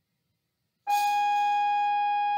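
School bell sounding a steady tone of several pitches at once, cutting in suddenly about a second in and holding without fading.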